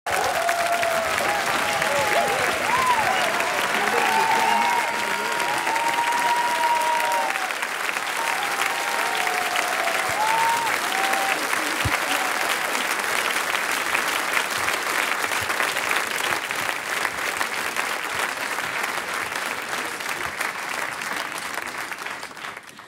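Audience applauding steadily, with cheering voices over the clapping in the first ten seconds or so; the clapping thins slightly towards the end.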